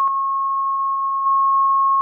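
Steady 1 kHz sine-wave test tone, with a small click at the start. Its level dips slightly just after the click and steps back up about 1.3 seconds in.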